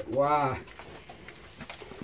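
A man's short hummed syllable, about half a second long, rising and then falling in pitch.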